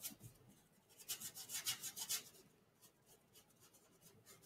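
Paintbrush scrubbing oil paint onto canvas: faint, quick scratchy strokes, a couple at the start and a run of them from about one to two seconds in.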